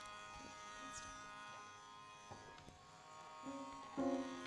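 A faint, steady drone of several held tones, with a few soft knocks. A low note comes in near the end.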